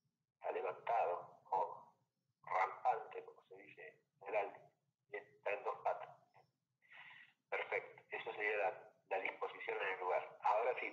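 Speech: a voice talking in short phrases with brief pauses between them.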